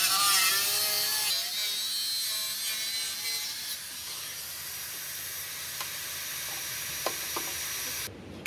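Angle grinder with a cutting disc slicing through the rusted sheet steel of a truck's cab and wheel-arch panel: a steady high whine and hiss. The pitch wavers in the first second or so as the disc bites into the metal, then it runs on a little quieter, with a couple of small clicks near the end.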